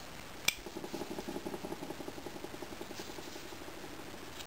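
Carving knife cutting into a small wood carving: a sharp click about half a second in, then a rapid stuttering chatter of the blade against the wood for about two and a half seconds.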